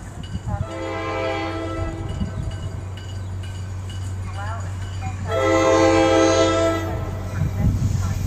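Horn of an approaching New Jersey Transit cab car sounding two blasts, a shorter one near the start and a louder, longer one about five seconds in, over a steady low hum.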